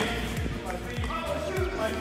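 Background music with a steady drum beat, about two beats a second.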